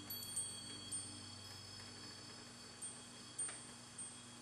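Faint, high-pitched metal chimes ringing in a few scattered strikes as a song ends, over a low sustained tone dying away.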